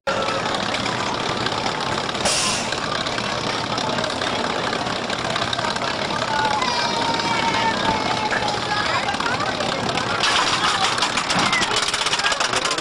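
People's voices and crowd noise around a kiddie roller coaster. About ten seconds in, a fast, even clicking clatter starts as the Jr. Gemini coaster train is pulled up its chain lift hill.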